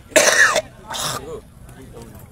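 A person close to the microphone coughing: one loud, harsh burst, then a shorter one about a second in.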